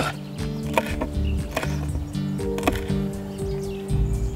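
A kitchen knife chopping a red chili pepper on a wooden cutting board: a few sharp, irregularly spaced chops over steady background music.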